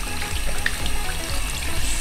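Tap water running and splashing over hands and a small toy as it is rinsed in a ceramic sink.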